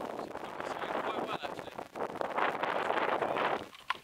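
Indistinct voices talking, with wind buffeting the microphone.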